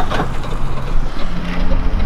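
Pickup truck towing a boat on a trailer, its engine running steadily as it pulls away.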